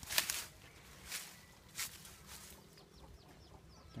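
Three short rustles, most likely leaves and twigs of lime-tree branches brushing past the handheld phone, with faint bird calls in the background in the second half.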